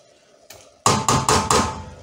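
A wooden spoon knocked four times in quick succession against the rim of a steel stockpot, about a second in, each tap ringing briefly in the metal.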